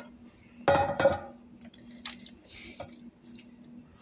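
Raw ground-beef meatloaf mixture being tipped from a bowl and pressed into a metal loaf pan, with one louder, brief sound about a second in and soft handling noises after, over a steady low hum.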